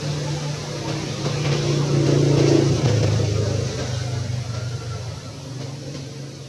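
Low engine hum of a passing motor vehicle, swelling to its loudest about two and a half seconds in and then fading away.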